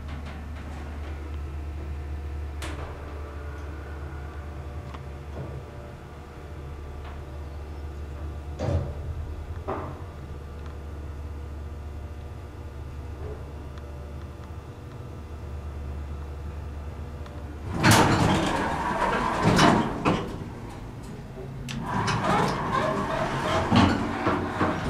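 Dover elevator car travelling with a steady low hum and a few faint clicks along the way. About 18 seconds in, the doors slide open loudly, and more door noise follows near the end.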